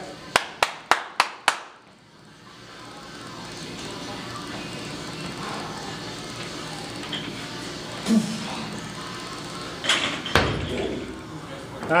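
Five sharp clicks in quick succession in the first couple of seconds, then a steady background hiss. About ten seconds in there is a short loud clatter as a loaded Olympic barbell with bumper plates is pulled off the platform into a clean.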